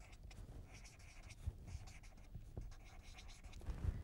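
Felt-tip marker writing on paper: faint, irregular scratching of short pen strokes.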